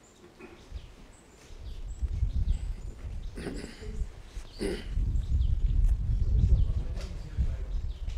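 A man coughs once between two spoken words, over an uneven low rumble that builds through the second half.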